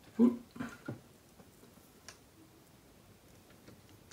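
Small flathead screwdriver tightening the terminal screw of a 5-amp plastic connector block clamping stranded copper wires. There are faint scattered ticks and scrapes, preceded in the first second by three short loud pitched pulses, the first the loudest.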